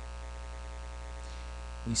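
A low, steady electrical hum that does not change, with a voice starting right at the end.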